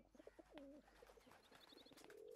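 Faint outdoor ambience: a dove cooing low about half a second in, and a short run of high bird chirps near the end.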